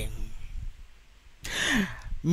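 A man's short intake of breath close to a headset microphone, about one and a half seconds in, after a brief quiet pause between phrases.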